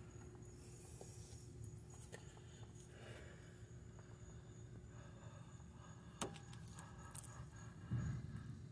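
Near silence: a faint steady hum with a few small clicks, the most distinct about six seconds in.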